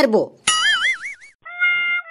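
Cartoon sound effect: a high warbling, whistle-like tone with fast vibrato, then, about a second and a half in, a held electronic note.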